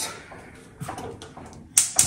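Gas range burner being lit: faint handling of the control knob, then the spark igniter clicking sharply twice near the end.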